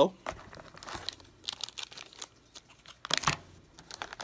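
Plastic packaging of inkjet cartridges crinkling and crackling as it is handled, with a louder rustle about three seconds in.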